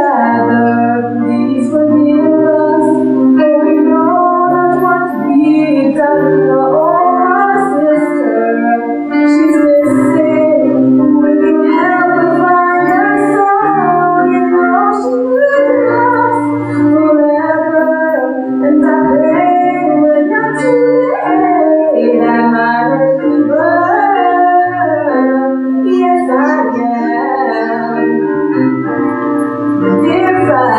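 A woman singing a slow gospel solo through a microphone, her melody rising and falling over steady held accompaniment chords and a low bass line.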